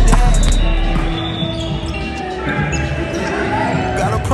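A volleyball being struck during indoor play, a few sharp smacks in the first half second, over background music whose deep bass drops out about a second in.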